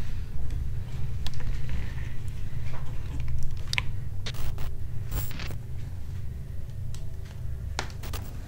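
A cardboard box being opened by hand: flaps pulled back and the cardboard and packing material handled, giving scattered scrapes, rustles and clicks over a low steady rumble.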